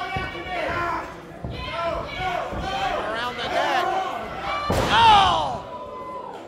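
Wrestlers' bodies crashing onto the wrestling ring mat, one loud slam about five seconds in, with voices shouting throughout and a yell right after the impact.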